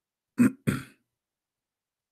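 A man clearing his throat: two short, harsh bursts in quick succession, about half a second in.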